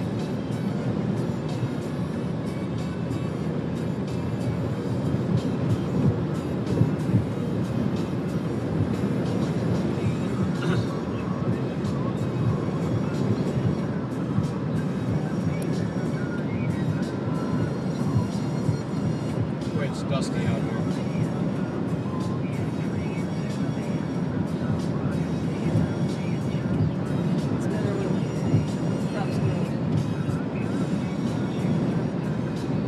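Steady road noise of a moving car, with music playing over it.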